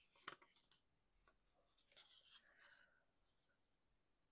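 Near silence with a few faint paper rustles as a small piece of heavy paper is handled and folded by hand.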